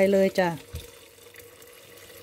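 Chicken broth pouring in a steady stream from a metal pot onto rice in an electric rice cooker's inner pot, adding the cooking liquid for chicken rice.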